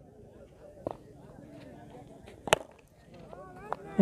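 A sharp crack of a cricket bat striking the ball, once, about two and a half seconds in, with a fainter click about a second in. Faint distant voices underneath.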